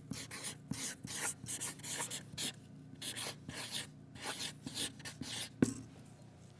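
Felt-tip marker writing on chart paper, a quick run of short rubbing strokes as letters are formed, with one sharp tap near the end.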